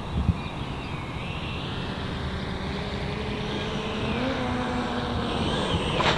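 Electric ducted-fan motor of a radio-controlled Freewing L-39 jet whining in flight on its landing approach over water. The whine wavers and rises a little in pitch and grows slowly louder, over a steady low rumble, with a brief knock about a third of a second in.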